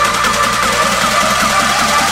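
Background electronic dance music in a build-up, without vocals: a synth note repeats quickly, about four times a second, over a slowly rising tone.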